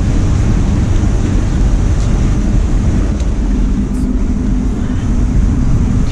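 Steady, loud low rumble with no clear tone, typical of wind buffeting the camera microphone outdoors, mixed with traffic noise.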